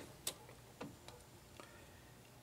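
Quiet room tone with three faint, irregular ticks spread across two seconds.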